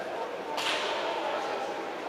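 A single sharp crack about half a second in, fading quickly, over the murmur of voices in a large hall.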